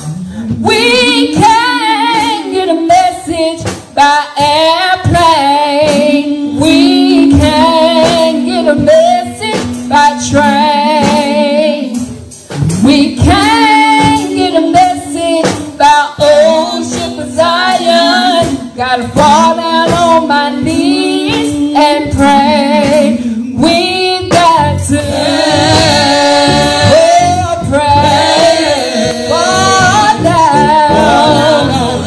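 A woman singing a gospel song loudly into a handheld microphone, with a second woman singing along on another microphone.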